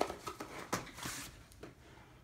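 A rifle magazine being pushed into an elastic loop on a nylon case panel: a few light knocks and a brief rustling scrape about a second in.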